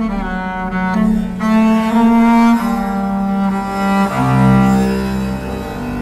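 Swedish harp bass, a 3D-printed, carbon-fibre double bass with 39 sympathetic strings, played with a bow: a run of sustained notes that change pitch every second or so, with a deeper note coming in about four seconds in.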